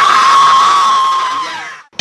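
Young people screaming in one long, high-pitched scream that holds steady and then fades out near the end.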